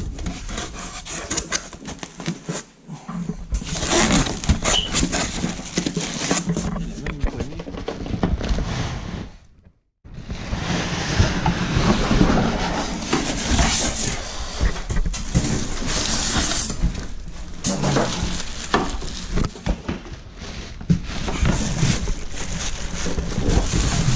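Clear plastic wrapping rustling and crinkling, with foam packing rubbing against cardboard, as a welder is unpacked by hand from its box. The sound cuts out suddenly for a moment about ten seconds in.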